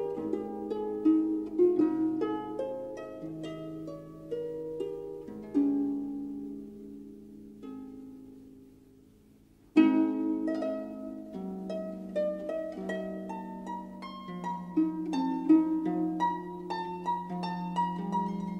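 Concert harp playing a slow adagio: plucked notes and chords that ring on and decay. About six seconds in the music dies away almost to silence, then a loud chord just before ten seconds starts it again.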